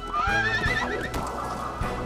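A foal whinnying: one call that rises and then wavers, about a second long, over background music.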